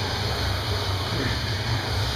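Rowing machine's flywheel running steadily under a hard rowing stroke, an even rushing noise with a low hum.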